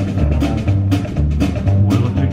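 Live rockabilly trio playing an instrumental passage: electric guitar, upright bass and drum kit, with regular drum hits over the bass line.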